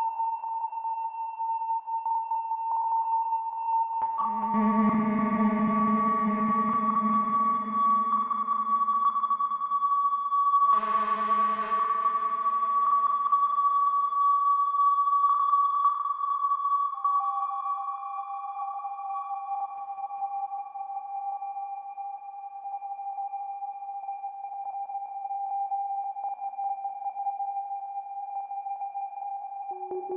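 Doepfer A-100 analog modular synthesizer playing steady held electronic tones through a MakeNoise Mimeophon delay. Two fuller, louder notes come in about four and eleven seconds in and die away slowly, and later the held tone drops to a lower pitch.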